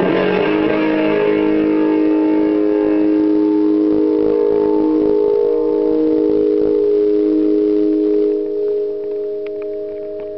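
Electric guitar's final chord held as a steady sustained drone of several notes, dropping in level after about eight seconds, with a few small clicks near the end.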